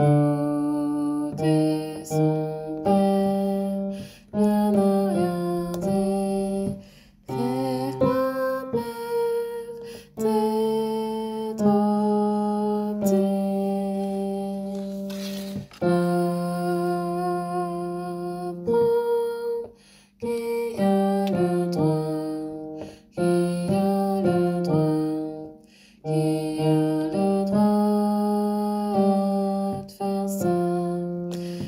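A large mixed choir singing slow, sustained chords in phrases, each chord held a second or two before moving to the next, with brief breaths between phrases.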